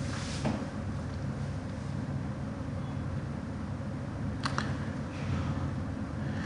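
A steady low machine hum, with two quick clicks about four and a half seconds in.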